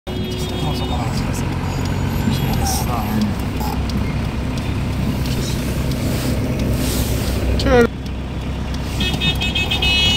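Steady engine and road noise inside a moving car's cabin, with muffled voices and short high beeping tones near the start and again near the end.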